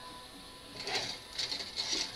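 Hands handling paper and small parts on a work surface: a few quick, irregular rustling and scraping sounds starting about a second in.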